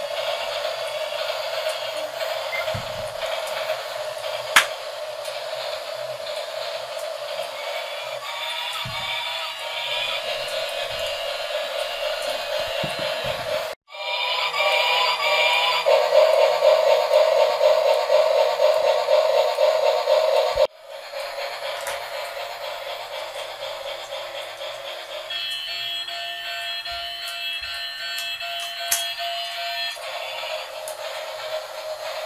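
Battery-powered bubble-blowing toy locomotives playing tinny electronic tunes and train sound effects over the steady whir of their motors. The sound breaks off abruptly twice and picks up again.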